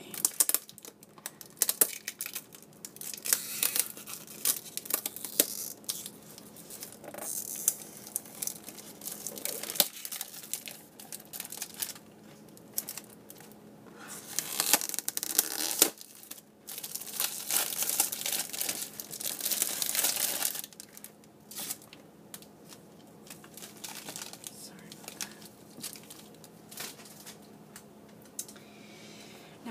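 Plastic shrink-wrap being torn open and peeled off a cardboard chocolate box, then crumpled. It is an irregular, loud crinkling and crackling, with longer unbroken stretches about halfway and two-thirds of the way through.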